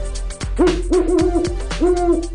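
Owl hooting: a quick series of short hoots starting about half a second in, each sliding up briefly and then holding, over music with a drum beat.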